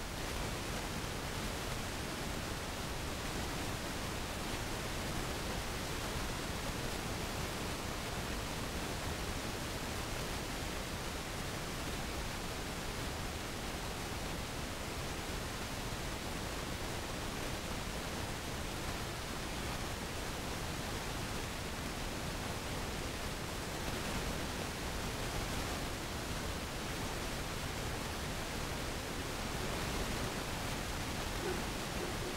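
A waterfall's steady rushing noise, even and unchanging throughout.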